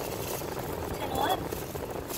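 Steady background noise inside a car's cabin, with a faint voice heard briefly about halfway through.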